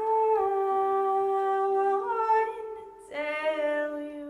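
A woman singing long, held notes into a microphone, with a small dip and rise in pitch. A second held phrase begins about three seconds in.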